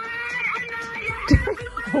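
Music playing from a smartphone's small speaker, a high held tone running steadily, with a soft knock about a second and a half in.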